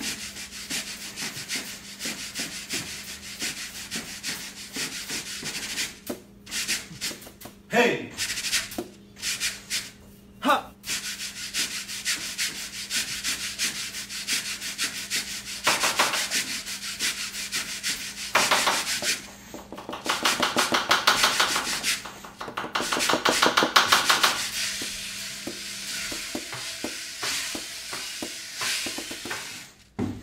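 Brooms sweeping a tiled floor and a sponge scrubbing a tabletop, played as rhythmic percussion in quick repeated brushing strokes. Two short sliding squeaks cut through about eight and ten seconds in.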